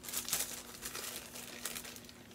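Kraft paper packet rustling in the hands as it is opened, a run of short, irregular crinkles.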